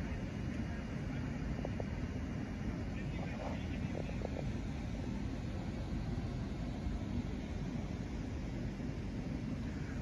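Steady low outdoor background rumble, with faint distant voices a few seconds in.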